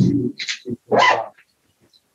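A dog barking several short times in quick succession.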